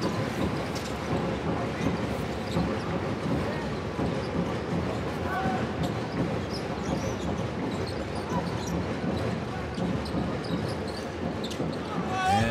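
A basketball bouncing on a hardwood court during live play, with players' shoes on the floor, over a steady murmur from the arena crowd.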